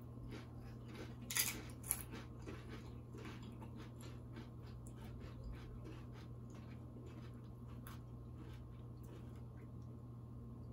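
Faint crunching and chewing of tortilla-chip nachos: a run of small crisp crunches, with two louder ones a little over a second in, over a steady low hum.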